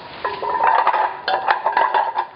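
A 100 kg stack of metal weight plates clinking and ringing as it swings and bounces on the rope after the drop was caught. There are several sharp clinks, each followed by ringing that hangs on. Nothing failed: the rope saver and webbing held the load.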